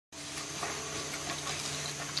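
Steady background hiss and low hum from an open sound system, with a few faint light ticks; no playing or singing yet.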